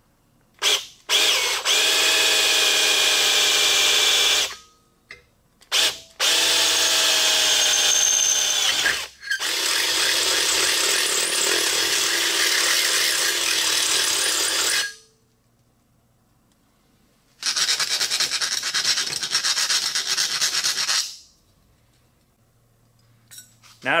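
Cordless drill boring a screw hole through a thin bent metal strip clamped in a bench vise. It runs in four bursts of a few seconds each with a steady whine, the last burst rougher and noisier.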